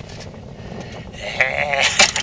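A man making a silly, quavering vocal noise with his tongue stuck out. It starts a little past halfway and is louder than the low wind-and-boat rumble under it.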